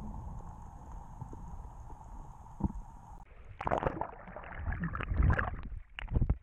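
Underwater camera-housing sound: a steady low rumble of water with a faint hum, which cuts off about three seconds in. It gives way to loud, irregular splashing and gurgling of water and bubbles as the camera comes up close under the surface.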